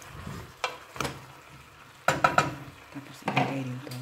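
Wooden spoon stirring chunks of taro and pork in a stainless steel pot, with scattered clacks and scrapes of the spoon and pieces knocking against the pot, a quick run of them about two seconds in.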